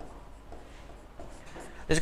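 Faint scratching of a stylus writing by hand on a pen tablet.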